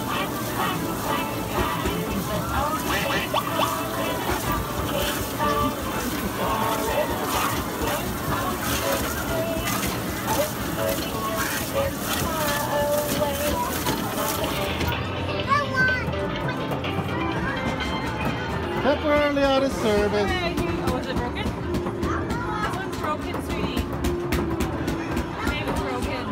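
Arcade din: electronic game-machine music and jingles over the chatter of people in a busy room.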